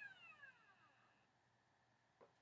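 Near silence. A faint tone, falling in pitch, fades out within the first half second.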